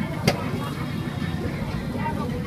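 Street-market background: a steady low rumble of traffic with faint chatter over it, and one sharp click about a quarter of a second in.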